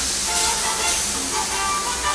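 Meat sizzling in a hot frying pan, a steady hiss, with background music playing underneath.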